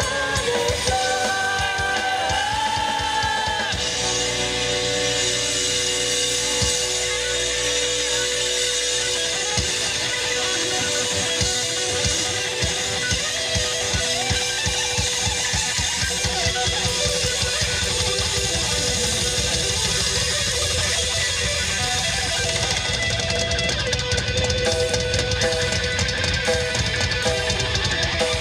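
Live rock band playing amplified: electric guitars and a drum kit, with a sung line in the first few seconds giving way to an instrumental passage of sustained guitar notes over the drums.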